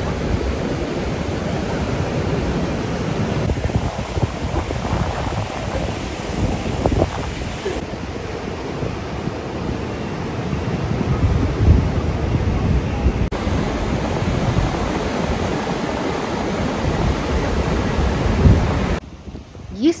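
Ocean surf washing over rocks and sand, with wind rumbling on the microphone in gusts.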